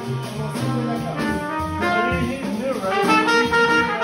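Live small-group jazz: a trumpet playing a melodic line over a walking bass line and drums, rising in loudness about three seconds in.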